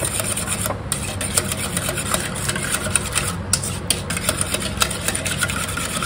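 Wire whisk beating a custard of eggs, milk and spices in a stainless steel bowl: a quick, uneven run of scraping and clinking strokes against the metal, over a steady low hum.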